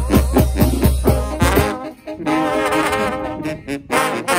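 Mexican banda playing an instrumental break: deep bass notes and drum strokes on a steady beat, which stop about a second and a half in, then trombones and trumpets take up a melodic line.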